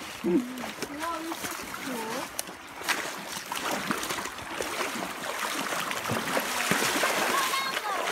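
Creek water running, a steady rushing that grows louder over the second half, with scattered footsteps and faint voices in the first couple of seconds.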